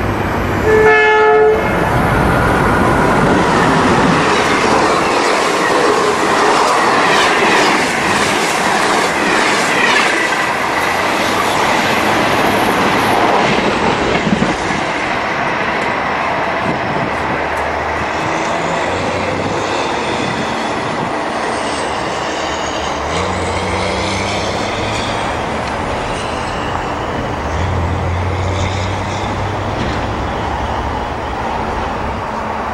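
Electric passenger train passing close by at speed: a short horn blast about a second in, then the rush and clatter of its wheels on the rails, slowly fading as it recedes.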